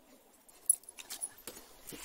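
Irish setter digging in forest soil with its front paws: a run of irregular scrapes and scratches starting about half a second in, the sharpest one early in the run.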